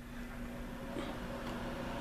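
Nesco American Harvest food dehydrator's fan motor coming on as it is plugged in, then running with a steady hum.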